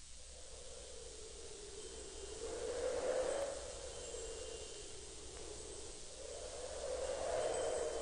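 Quiet, wind-like swell of hiss opening a 1991 hard-rock track, rising about three seconds in, easing off, then rising again near the end, before the band comes in.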